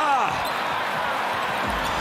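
Arena crowd noise, a steady hubbub from the stands, with a commentator's voice trailing off in the first half-second.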